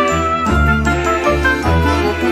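Instrumental closing theme music with a steady bass line, its notes changing every half second or so.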